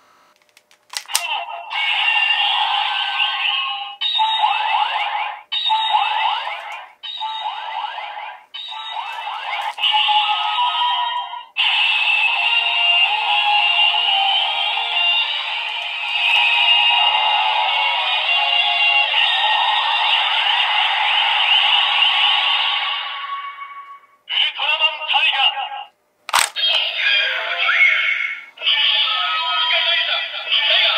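Electronic sound effects, music and recorded voice lines playing from a DX Ultraman transformation toy's small built-in speaker: thin and tinny with no bass. First comes a run of short clips of about a second and a half each, cut off one after another. A long stretch of music follows, then more short clips with a sharp click about three-quarters of the way through.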